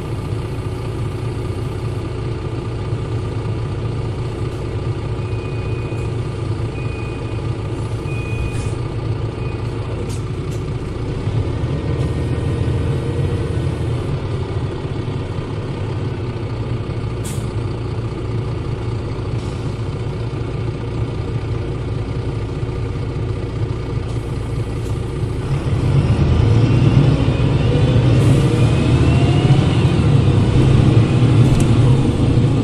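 Mercedes-Benz OM906 LA six-cylinder turbodiesel of a Citaro city bus, heard close up from the engine bay, running steadily at low revs. About 26 s in it gets clearly louder as the engine takes up load, with a whine that rises in pitch as the bus speeds up.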